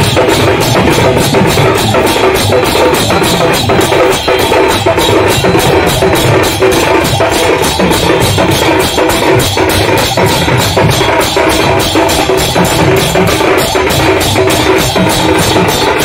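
Kirtan band playing large brass hand cymbals and a hand-played barrel drum, the cymbals clashing in a steady fast beat of about three to four strokes a second.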